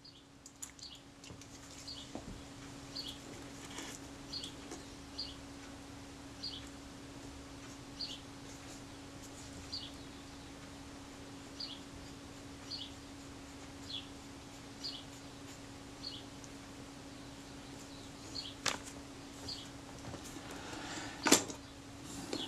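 A bird chirping repeatedly, a short high falling chirp about once a second, over a steady low hum. Two sharp knocks near the end.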